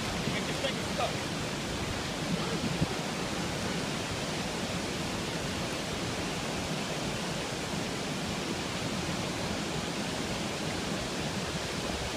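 Steady, even rush of water pouring through open spillway gates, with one sharp click about three seconds in.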